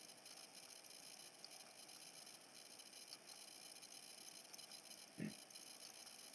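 Near silence: faint room tone, with one brief faint sound about five seconds in.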